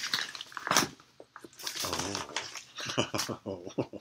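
Soft, mostly unclear talk between two men. Under a second in there is one short crackle of paper mail packaging being handled.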